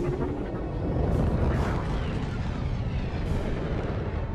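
Film sound mix: a continuous deep rumble with booms under dramatic music, with surges of noise about a second in and again past three seconds.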